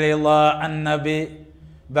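A man chanting Arabic devotional verse in a melodic voice, holding long steady notes. The phrase breaks off about two-thirds of the way through and a new one starts near the end.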